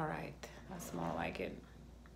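A woman speaking two short, untranscribed phrases, with a small click between them.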